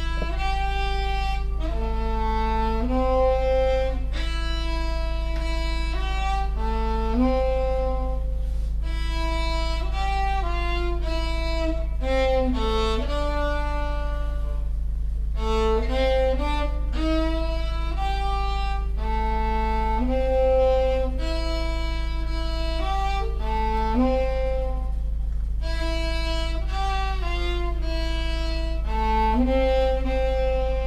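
Solo cello bowed, a melody of sustained notes played in phrases with short breaks between them. A steady low hum runs underneath.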